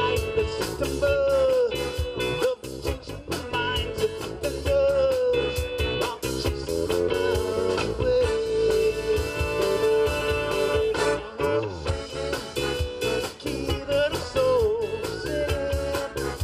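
A live band playing with saxophone, electric guitars, keyboard and drums, over a steady drum beat.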